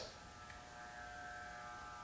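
Electric hair clippers running, a faint steady buzz.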